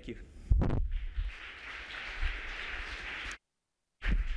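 Audience applauding after a loud thump about half a second in; the applause cuts off abruptly near the end.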